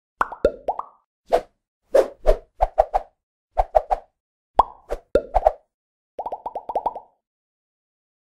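Animated logo intro sound effects: short pops and plops in irregular clusters, some with a quick rise in pitch. A little after six seconds comes a fast run of about eight brighter blips, and then the sound stops.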